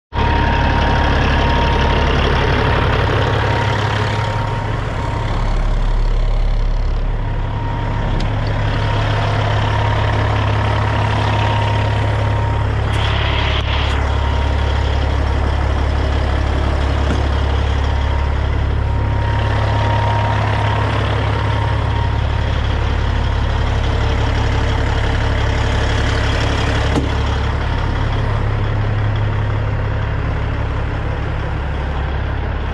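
Heavy semi-truck diesel engine idling steadily, a deep even rumble, with a short hiss about thirteen seconds in.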